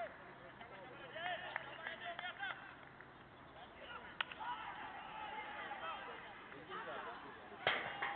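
Scattered voices of players calling out across an open cricket ground, with a sharp knock about four seconds in and a louder one near the end.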